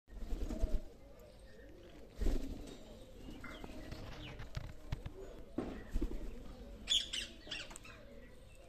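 Rose-ringed parakeet wings flapping in short bursts, about half a second in, about two seconds in and about six seconds in. A quick cluster of short, sharp high-pitched sounds comes about seven seconds in.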